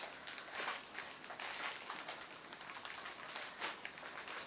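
Faint rustling and light handling sounds of a plastic-wrapped package with a paper header card being held and turned over in the hands.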